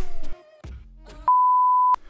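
A single steady electronic beep at one pitch, lasting about two-thirds of a second, which starts about a second and a quarter in and cuts off sharply. It follows a brief low noise in the first moment.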